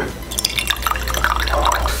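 Water pouring in a thin stream into the aluminium boiler of a Bialetti Brikka moka pot, splashing as the chamber fills.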